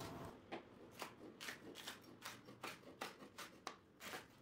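Chef's knife slicing red kapya peppers into strips on a wooden cutting board: faint, crisp cuts, about three a second, each stroke ending on the board.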